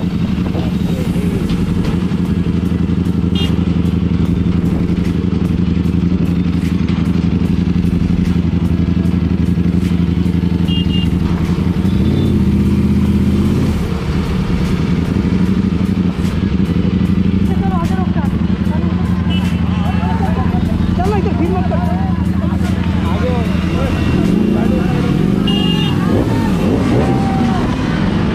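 Motorcycle engine running steadily under way. The engine pitch shifts about halfway through, and the revs rise and fall near the end.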